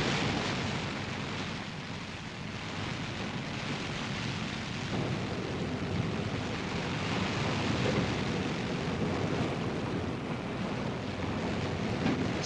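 Steady rushing noise of sea and wind from a warship under way at speed, with no distinct strikes or tones.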